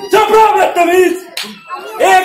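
One sharp smack about one and a half seconds in, following a second of loud voices.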